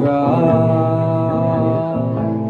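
Live rock band with electric guitars playing, a long note held over sustained chords with hardly any drum hits.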